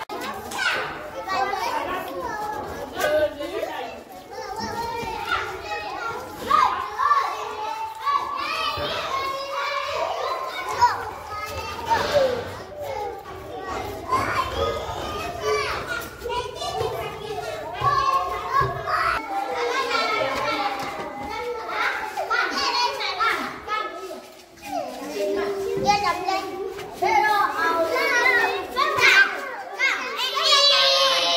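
Many young children talking and calling out at once, a continuous hubbub of small voices.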